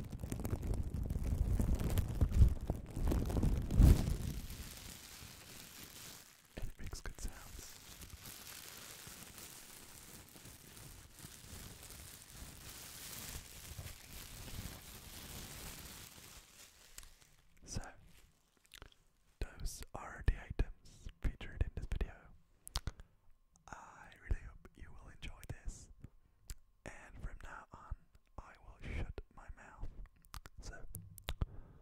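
Clear plastic bag crinkled and crumpled right against the microphone grille, loud with a low rumble for the first few seconds, then a softer, steady crinkling. About two-thirds of the way through it gives way to close-mic whispering in short broken bursts.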